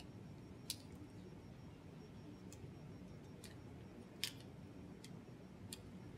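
A few sharp plastic clicks, about six spread over the stretch with the loudest a little past four seconds in, as a small plastic saline bottle is handled and twisted in gloved hands, over a faint steady room hum.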